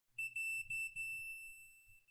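Digital multimeter's continuity beeper sounding a high, steady beep while the test probe touches the metal spindle body: it stutters a few times in the first second as the probe contact settles, then holds and slowly fades. The beep signals a low-resistance connection, a reading in the mid-teens of ohms.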